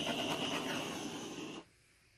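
Handheld torch flame hissing steadily with a thin high tone, shut off abruptly about one and a half seconds in.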